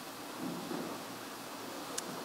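A pause between spoken words: faint, steady hiss of room tone, with a faint low murmur about half a second in.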